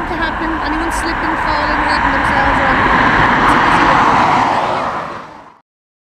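Jet engine noise of an Airbus A319-112's CFM56 turbofans at take-off thrust as the airliner climbs away, a steady rush that swells a little and then fades out quickly about five seconds in.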